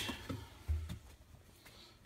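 Faint handling and rummaging noise as a hand reaches into a washing machine drum for a shoe, with one soft low bump a little under a second in.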